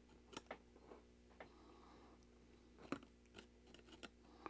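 Near silence with a few faint clicks of small hardware being handled as a BNC connector and grounding tab are fitted to an antenna frame with a wrench.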